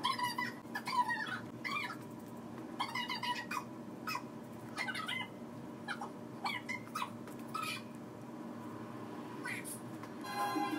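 A cat meowing over and over in short calls, about a dozen in all, over a steady low hum; the calls stop near the end.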